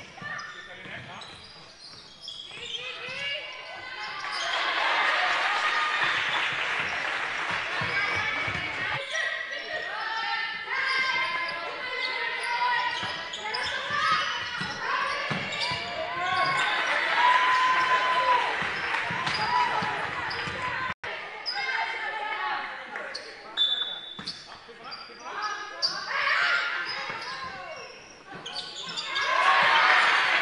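Basketball dribbled on a hardwood court during a game, with players' shoes and voices calling out in a large echoing sports hall.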